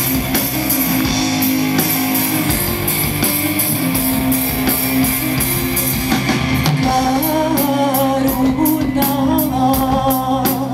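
Live rock music from a concert stage: guitars over sustained bass notes, with a steady drum and cymbal beat and a melodic line coming in about seven seconds in.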